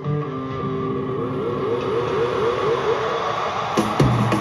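Live rock band through an arena PA: electric guitar carries the music almost alone over held notes, with little bass or drums, then plays a quick run of short rising notes. Near the end, drum hits and the full band come back in.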